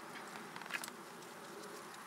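Faint rustling of currant bush leaves and twigs as redcurrants are picked by hand, with a short crackle of leaves a little under a second in, over a faint steady outdoor background.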